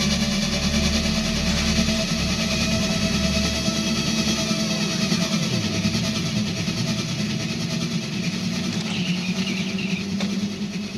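A steady, dense mechanical-sounding drone from an industrial electronic track, with a low pulsing bass that drops out about four seconds in.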